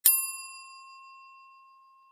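A single bright bell-like chime sound effect, struck once at the start and ringing away over about two seconds, marking a subscribe button being ticked.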